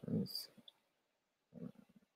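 A man's low, brief murmur at the start, with a short high click about a third of a second in, then quiet, and another faint murmur near the end.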